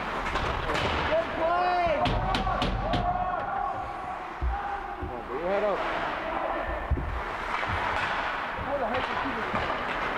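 Ice hockey rink during play: indistinct shouts from players and spectators echo in the arena. A few sharp clacks of sticks and puck come about two to three seconds in, and dull thuds against the boards come later.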